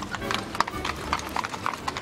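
A horse's hooves clip-clopping on cobblestones as a horse-drawn carriage passes: a quick, uneven run of sharp hoof strikes.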